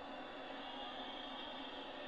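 Faint, steady background noise with no distinct events.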